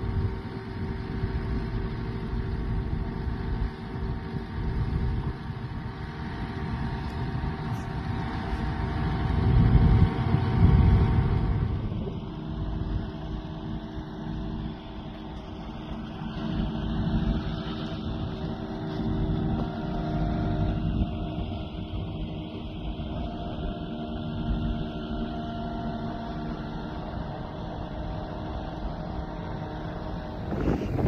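Cat 259D compact track loader's diesel engine running under load as it pushes a wooden shed across dirt, with a steady drone that swells loudest around ten seconds in.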